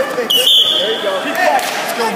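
Referee's whistle: one short, steady, shrill blast about half a second long, stopping the wrestling, over shouting spectators in a gym.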